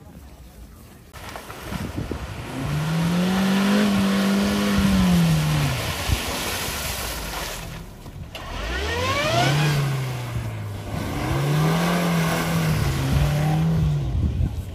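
Suzuki Jimny's engine revving hard in bursts as it crawls through a muddy off-road course, its pitch swelling and falling several times. It eases off briefly about halfway through, then climbs sharply again.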